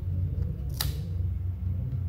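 Trading cards being handled and pulled apart, with one sharp click a little under a second in, over a steady low hum.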